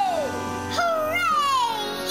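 Cartoon background music with a child's wordless voice: one long call about a second in that rises briefly and then slides down in pitch.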